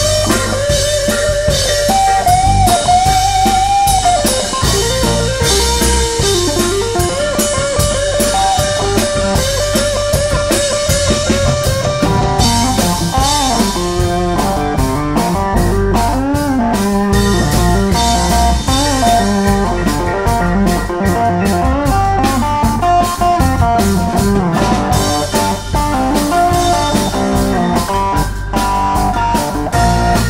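Live rock band: an electric guitar plays a lead solo over drums. For the first twelve seconds or so it holds long notes that waver with vibrato, then it moves into quicker runs of notes.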